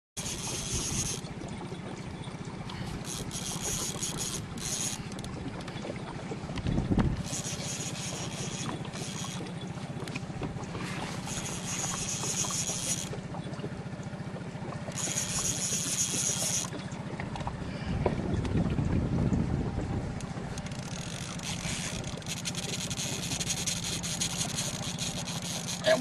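Boat motor humming steadily while a fishing reel's drag buzzes in bursts of one to two seconds every few seconds, giving line to a hooked wels catfish pulling against the bent rod.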